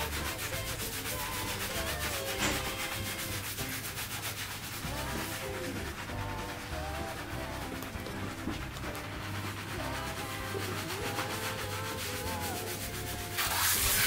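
Fingertips scrubbing a foam-lathered scalp during a barber's shampoo: a fast, even, rhythmic rubbing and squishing of soapy hair. Just before the end a hand shower's water spray comes on for the rinse.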